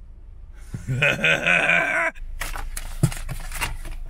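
A man's drawn-out groan lasting just over a second, followed by a string of short clicks and rustles over a low rumble.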